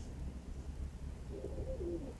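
A pigeon cooing once, briefly, in the second half, over a faint steady low rumble.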